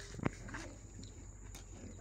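Faint clucking of free-ranging chickens, with a single sharp click about a quarter second in.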